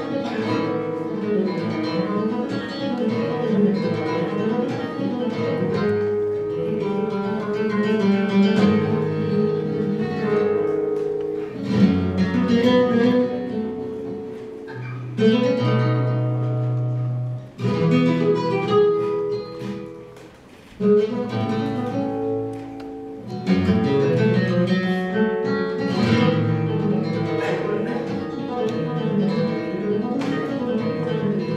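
Solo flamenco guitar played live: runs of plucked notes mixed with strummed chords, with the playing briefly dropping away twice past the middle.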